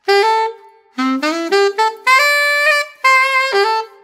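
Selmer Mark VI alto saxophone playing a soulful R&B lick in concert C major: a short opening note, a brief pause, then a run of stepped notes with grace notes and a quick trill blip near the top, ending on a held note reached by a grace note up to A.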